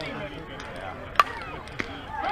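A softball bat hits a pitched ball with one sharp, loud crack about a second in. A fainter click follows about half a second later, over faint chatter.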